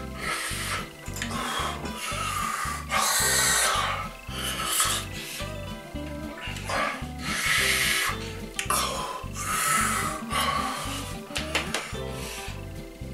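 A person breathing hard and noisily through the mouth, about eight hissing breaths in and out, from the burn of a scotch bonnet chilli on the tongue. Background music with a steady beat plays under it.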